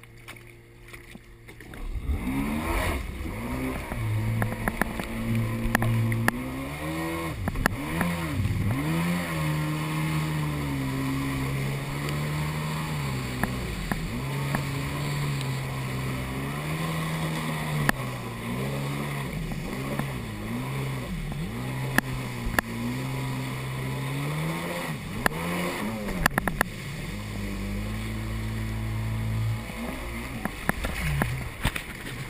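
Yamaha SuperJet stand-up jet ski's two-stroke engine throttled up about two seconds in, then running hard, its pitch rising and falling with the throttle. Water spray hisses along the hull the whole time.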